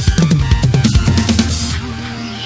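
Acoustic drum kit played in a fast fill: a rapid run of tom and bass-drum strokes with cymbals, about eight strokes a second. The fill stops abruptly near the end, leaving steady held tones of electronic backing music.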